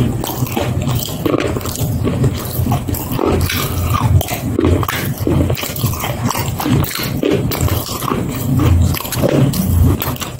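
Close-miked eating sounds: a person chewing with the mouth open, with many quick wet smacks and clicks of the lips and tongue over a low rumble.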